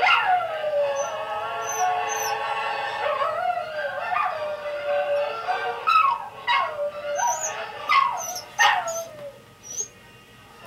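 Scottish terriers howling: a long falling howl at the start, then a string of shorter falling howls in the second half, dying away near the end.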